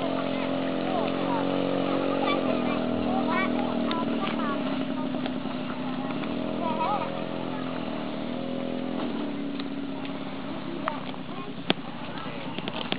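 A large group of schoolchildren chanting together in unison, in long held sing-song notes that step to a new pitch every few seconds. A few sharp clicks come near the end.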